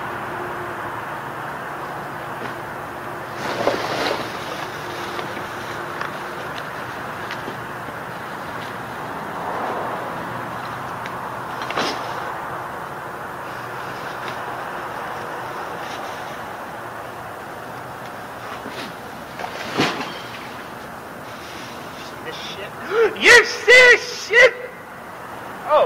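Steady outdoor background noise with a few sharp crashes or knocks, about four, twelve and twenty seconds in, as discarded trash is thrown down and lands. A man's voice, laughing or calling out, comes in near the end.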